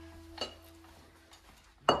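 A white ceramic bowl set down on a hard countertop: a light knock about half a second in, then a louder clunk with a short ring near the end. Faint background music fades out at the start.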